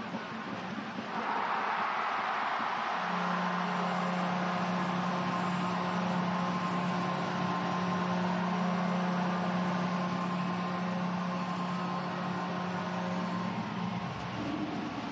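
Arena crowd cheering a home goal. About three seconds in, a goal horn sounds one long steady low note, held for about eleven seconds over the cheering.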